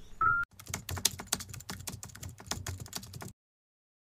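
A brief high beep, then an irregular run of sharp clicks or taps, several a second, which cuts off abruptly near the end.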